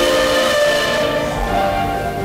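A woman singing in church with sustained instrumental accompaniment: a held chord gives way to lower notes about a second and a half in.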